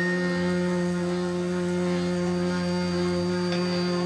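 A steady musical drone held on one pitch, several tones sounding together without melody.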